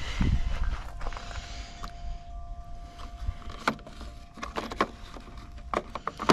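Rumble and rustle from the camera being handled and moved, under a faint steady tone, then a few light clicks near the end as metal sockets are handled in a socket tray.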